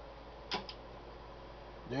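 A sharp click about half a second in, with a fainter second click just after, as a President Madison CB radio is powered up on DC. Under it is a faint steady electrical hum.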